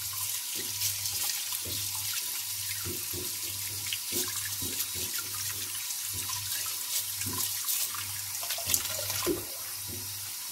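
Kitchen tap running steadily into a sink full of water while a potato is scrubbed with a stiff-bristled brush under the stream, the scrubbing strokes and splashes coming about twice a second. The scrubbing stops shortly before the end, leaving only the running tap.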